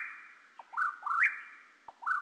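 A bird-like whistled call repeated about every 1.3 seconds. Each call is a quick low note followed by two rising notes, the last one high, held and fading.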